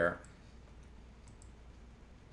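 A few faint, short clicks of a computer mouse over a low steady hum: one just after the start and two close together about a second and a half in.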